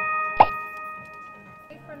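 Bell-like ding sound effect, struck once and ringing on while it slowly fades. About half a second in, a short, sharp tone falls steeply in pitch.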